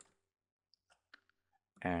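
About four faint, short clicks of a computer mouse and keyboard in near silence, as a selected block of code is deleted; speech begins near the end.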